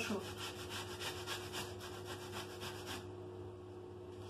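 Carrot grated on a metal box grater: quick, even rasping strokes, about five a second, that stop about three seconds in.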